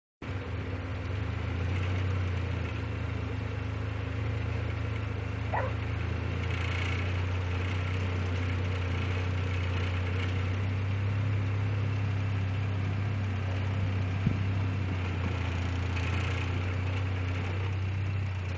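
A vehicle engine idling steadily with a low hum. There is a short high glide about five seconds in and a sharp click near the end.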